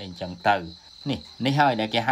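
A man speaking Khmer, with a faint steady high-pitched tone underneath.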